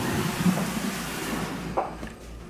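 A plastic snake tub being slid out of its rack: a scraping slide that fades out over about a second and a half, with a short knock near the end.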